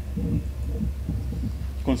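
Steady low hum with a faint, uneven low rumble.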